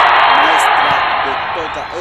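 Applause sound effect added in editing: a dense, even hiss of clapping that cuts off abruptly at the end, with faint speech beneath it.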